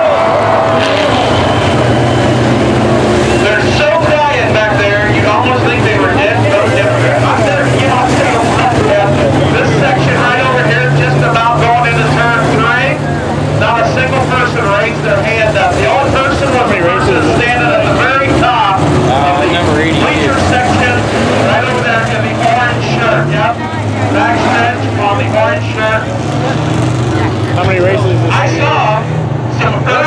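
Several dirt-track sport modified race car engines running at low revs in a slow-moving pack, a steady low hum, with spectators talking close by.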